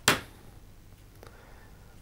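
A single short, sharp rush of noise just after the start, then quiet room tone with a faint steady low hum and one faint tick.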